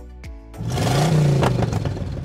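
A loud "vroom" like an engine revving, starting about half a second in and lasting about a second, its pitch rising and then falling, over background music.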